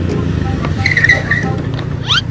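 Automatic motor scooter coming in fast and skidding to a stop on an asphalt road, with the engine running and a brief wavering tyre squeal about a second in.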